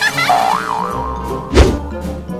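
Cartoon sound effects over background music: a wobbling, boing-like tone in the first second, then a single low thump about a second and a half in.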